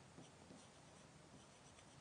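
Near silence, with only the faint sound of a stylus writing on a touchscreen board.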